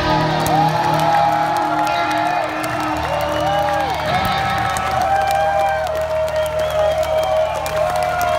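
Amplified electric guitars held in ringing feedback tones that slide up and down as a live rock song ends, over a steady low amp drone. The crowd cheers and claps throughout.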